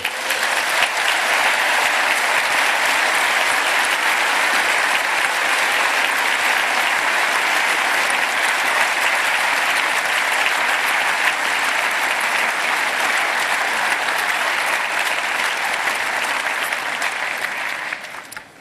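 Audience applauding: steady, sustained clapping that eases off slightly near the end.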